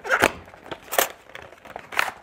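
Cardboard and plastic packaging being handled: a few sharp crackles and clicks as a clear plastic clamshell tray is slid out of a white cardboard box.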